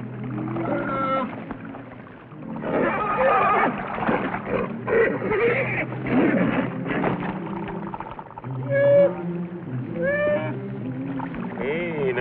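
A horse whinnying and squealing in alarm: several rising-and-falling calls, the clearest two near the end.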